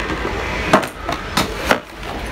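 About five sharp knocks and clicks of a hard plastic-windowed toy box being handled and set back on a store shelf, over steady background noise.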